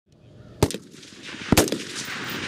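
Two 5.56 mm M4 carbine shots on a firing range, about a second apart, each followed at once by a short echo. These are single aimed rounds fired while zeroing the rifle sights.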